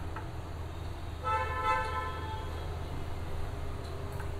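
A single horn-like toot, one steady pitched tone lasting about a second, starts about a second in, over a low steady hum.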